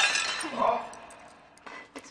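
A plate shattering: the crash peaks just at the start and the shards clink and die away within about half a second. A short startled 'Oh' follows.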